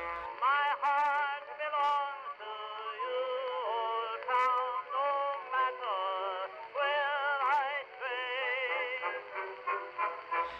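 Early phonograph recording of a song: a singer holding wavering notes with strong vibrato. It has the thin, tinny sound of an old acoustic-era record, with no bass and no treble.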